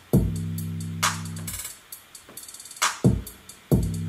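Hip-hop beat playing back from a DAW: long 808 bass notes, a drum-machine clap hit about a second in, and a quick hi-hat rhythm layered from two hi-hat sounds ticking on top.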